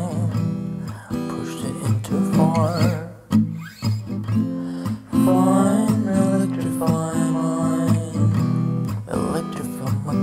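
Acoustic guitar strummed with a man singing over it in a low baritone voice, his held notes wavering with vibrato between short gaps.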